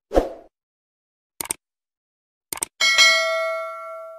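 Subscribe-button animation sound effects: a short thump, then two quick double mouse clicks about a second apart, then a bell-like ding that rings out and slowly fades near the end.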